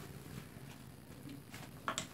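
Quiet room with a few faint light ticks and one sharp click near the end.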